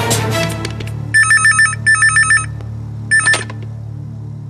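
Telephone ringing with an electronic trill: two rings back to back, then a shorter third. A steady low musical drone runs underneath.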